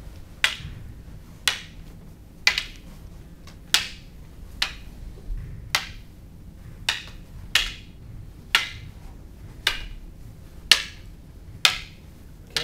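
Wooden canes clacking together about once a second in a steady rhythm as two partners trade strikes and blocks in a cane flow drill, each hit sharp and short with a brief ring.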